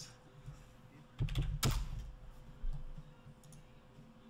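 A few sharp clicks with dull knocks on a desk, from computer keyboard and mouse use, bunched together about a second in, with one more knock later; a faint steady hum runs underneath.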